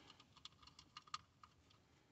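Faint small clicks and ticks of screws and a screwdriver against the plastic housing of a car's master power-window switch as the screws are set in, a quick irregular run that dies away near the end.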